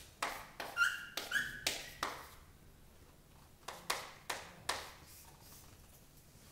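Chalk writing on a chalkboard: a quick run of sharp taps and strokes, two of them with a brief high squeak, then, after a pause, four more taps.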